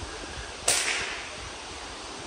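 A single sharp swish about two thirds of a second in: an arrow loosed from a bow, the string snapping forward as it releases.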